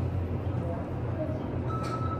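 Mitsubishi elevator car doors sliding shut in nudge mode over a steady low hum, with a short high electronic beep near the end.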